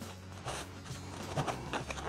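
Faint papery rustling of a cured tobacco leaf being handled and stretched by hand, over a quiet background music bed.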